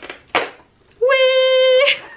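A woman's voice holding one steady sung note for almost a second, starting about halfway through with a slight upward slide, after a short noise near the start.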